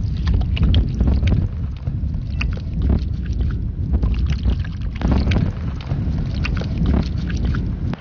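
Wind buffeting the microphone in a heavy low rumble, with water from a camp shower bag's hose spattering and splashing onto skin.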